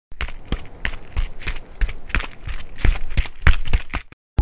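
A runner's footsteps on a synthetic track, about three strides a second, growing louder toward the end.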